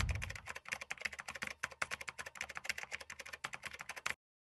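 Rapid computer-keyboard typing: a fast, uneven run of many keystrokes. The tail of a whoosh fades out just as the typing begins.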